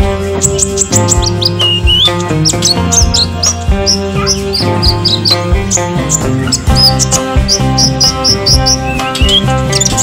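Caged kolibri ninja (sunbird) chirping: a rapid string of short, high chirps and brief upward slides, over background music.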